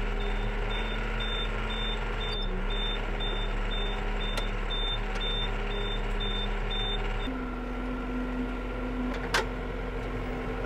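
Tractor engine running steadily with a reversing alarm beeping about twice a second; about seven seconds in the beeping stops and the engine note steps up. A single sharp click comes near the end.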